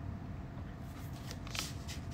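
A few brief, soft rustles from about a second in, over a low steady room hum.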